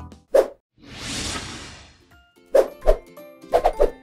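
Edited transition sound effects: a short pop, then a whoosh lasting about a second, then a music cue of short, bouncy notes that starts about halfway through.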